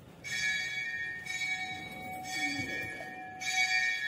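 A hand-rung temple bell, struck four times about a second apart, each strike ringing on into the next.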